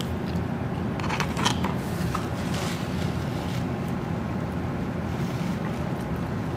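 Steady low background rumble and hiss, like room ventilation, with a few faint soft clicks about a second in.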